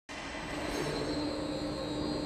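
A steady hum and hiss with a low droning tone, cutting in suddenly at the start and holding level.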